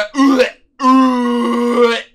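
A man's drawn-out vocal wail: a short cry, a brief break, then one long, steady held note of about a second.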